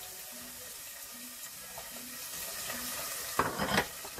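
Sliced carrots sizzling in a hot stainless steel pot, a steady frying hiss. A brief louder noise comes near the end.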